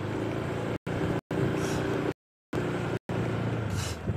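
Vehicle engine running steadily as the vehicle pulls away from a stop. The sound drops out to dead silence several times for a split second, with a longer gap near the middle.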